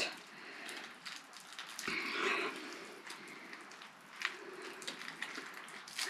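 Faint, scattered clicks and crackles of a dill pickle stuffed with sweets being bitten and chewed, with a short louder rustle about two seconds in.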